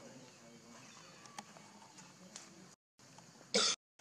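One short, loud, cough-like burst about three and a half seconds in, set between two brief gaps of dead silence, over faint outdoor background with a few small clicks.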